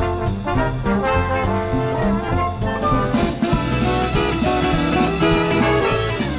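Orchestra with a prominent brass section of trumpets and trombones playing a jazzy show number over a steady beat.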